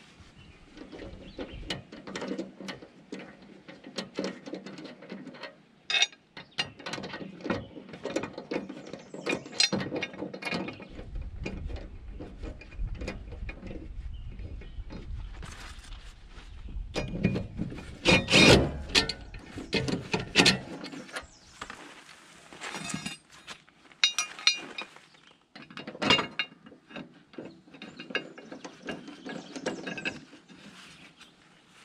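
Metal clinking and rattling of mower blades, spacers and bolts being handled and fitted onto the spindles of a Land Pride FDR1660 finish mower deck. There are many scattered clicks, with a louder, denser stretch of rattling about two-thirds of the way through.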